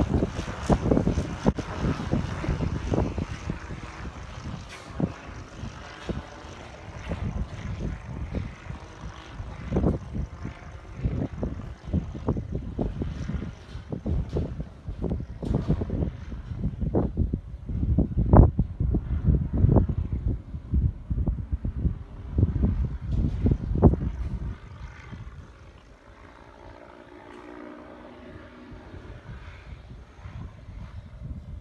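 Wind buffeting the microphone in uneven gusts, over the faint drone of a mini trike's Briggs engine and propeller flying overhead. The wind drops off about 25 seconds in, and the engine's hum is then heard more clearly.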